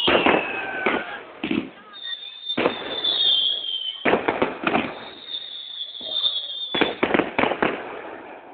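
Aerial fireworks: sharp bangs of bursting shells, scattered through the first few seconds, clustered around four seconds in and in a quick run near the end. Between them come high whistling tones that sag slightly in pitch.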